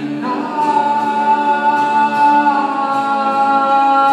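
Live folk band of acoustic guitar, fiddle and singing voices, with a long held note entering about a third of a second in and sustained to the end.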